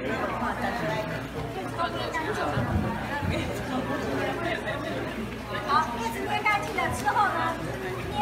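Indistinct chatter of several people talking over one another, growing livelier in the second half.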